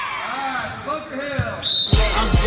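A group of young children shouting and chattering, then a short, high whistle blast near the end: the start signal for a sprint.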